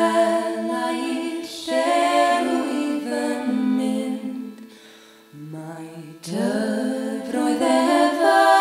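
Several voices singing a folk song unaccompanied in close harmony, on long held notes. About five seconds in the harmony drops away, leaving one low note held alone, and the full chord of voices comes back about a second later.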